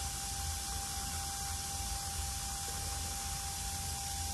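Room tone: a steady hiss with a low hum and a faint, thin steady whine underneath, with no distinct sounds.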